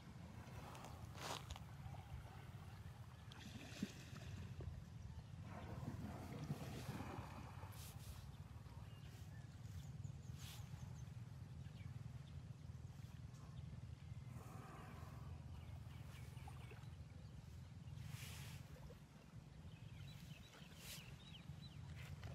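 Faint, irregular splashing and sloshing of river water as an elephant rolls and plays while mostly submerged, every few seconds, over a steady low rumble.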